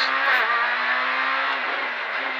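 Proton Satria S2000 rally car's two-litre four-cylinder engine at high revs, heard from inside the cabin. The pitch holds steady, then dips slightly near the end.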